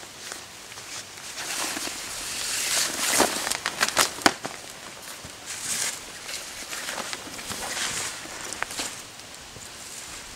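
Fabric of an uninflated air mattress rustling and crinkling as it is unfolded and spread out by hand, with a few sharp snaps and clicks about three to four seconds in.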